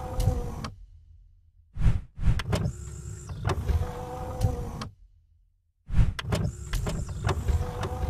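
Mechanical sound effect of an animated channel-logo sting: a low rumble with a steady tone and sharp clicks. It cuts off about a second in, starts again near two seconds, cuts off again near five seconds and starts once more near six.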